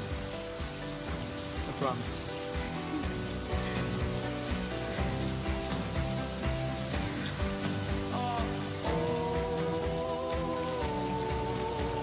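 Heavy rain pouring steadily, under slow music with long held notes. A voice says a word about two seconds in, and a stronger held note comes in about nine seconds in.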